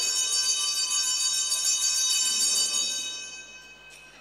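Altar bells shaken steadily in a continuous jingling ring at the elevation of the consecrated chalice, then dying away in the last second.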